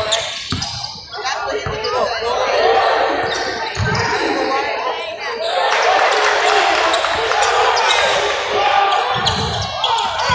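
A basketball bouncing a few separate times on a hardwood gym floor, heard as low thuds, amid indistinct voices and shouts echoing around a large gym.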